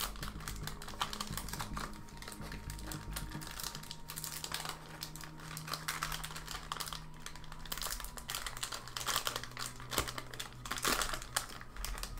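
A baseball card pack's wrapper being peeled and torn open by hand: an irregular run of small crackles and crinkles.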